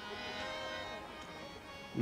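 Harmonium holding a soft, steady sustained chord.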